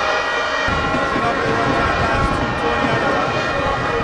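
Stadium background sound: several sustained pitched tones, horns from the stands, and a low rumble that comes in about two-thirds of a second in.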